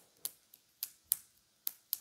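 About five short, sharp clicks, spread unevenly over two seconds with quiet between them.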